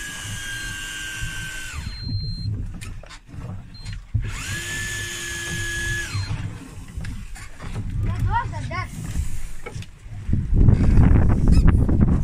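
Electric deep-sea fishing reel's motor winding in line on a hooked fish, in two runs of about two seconds. Each run rises in pitch as the motor starts and falls as it stops, with a steady whine between. Near the end a loud low rumbling noise takes over.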